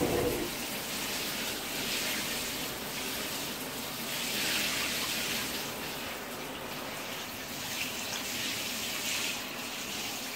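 Handheld shower head spraying water into a shower tray and over a bird standing in it: a steady hiss of spray and splashing that swells and eases a few times.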